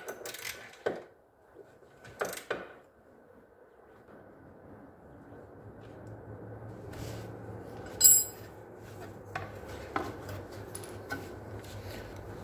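Hand tools clicking and clanking against steel while unbolting the 14 mm bolts of an ATV's lower control arm. Scattered clicks early on, a quiet stretch, then one sharp ringing metal clink about eight seconds in and a few more light knocks.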